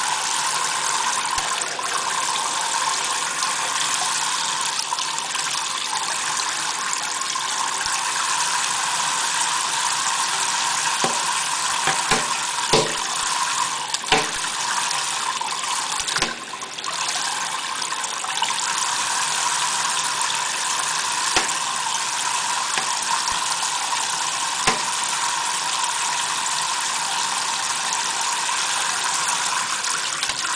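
Kitchen faucet spray running steadily, the water falling onto a parrot and into a stainless steel sink. A few short clicks come about halfway through.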